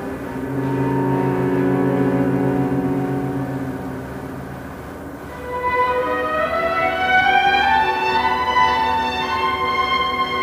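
A string chamber orchestra playing live: a sustained low chord with vibrato that thins and softens over the first half, then a higher line that enters about halfway and climbs note by note as the music grows louder.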